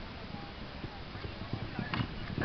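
Horse galloping on arena sand, its hoofbeats coming as dull, irregular thuds that grow more frequent in the second half.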